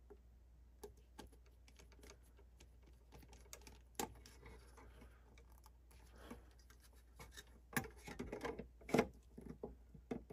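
Faint scattered clicks and scrapes of hands working a fire alarm heat detector and its plastic mounting base. A run of louder clicks and rubs comes near the end as the detector is fitted in place.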